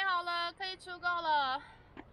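A woman's voice in a high, sing-song exclamation, ending about a second and a half in on a long drawn-out syllable that falls in pitch.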